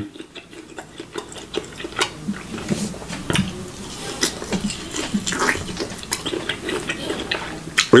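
A person chewing a bite of tomahawk steak close to the microphone: irregular mouth sounds with many small clicks.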